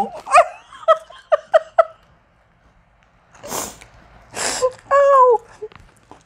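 A woman giggling in short, quick bursts, then, after a short pause, two loud crunches about a second apart as a crunchy gluten-free pretzel is bitten, followed by a brief vocal sound.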